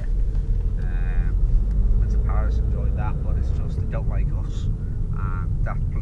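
Steady low rumble of a taxi's engine and road noise heard from inside the cabin while driving, with short bits of voice over it.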